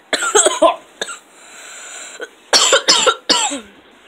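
A boy coughing in two loud bouts, a cluster in the first second and three sharp coughs near three seconds in. Between them there is a softer rustle of cardboard packaging being handled.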